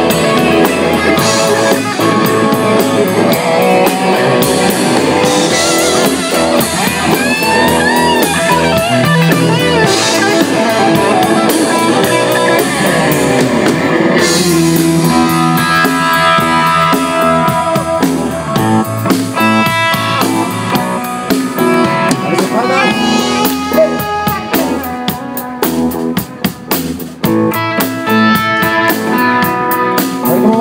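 Live rock band playing: two electric guitars over a drum kit, loud and continuous.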